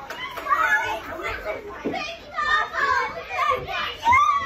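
A group of children's voices, many talking and exclaiming at once in excited, overlapping chatter, with no single voice standing out.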